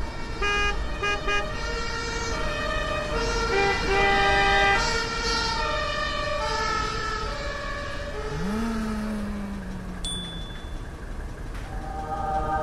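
Several car horns honking in a traffic jam, short toots at first and then overlapping longer honks at different pitches, over a steady low traffic rumble.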